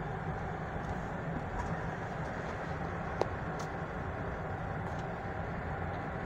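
Steady road and engine noise heard from inside the cabin of a slowly moving car, with one short click about three seconds in.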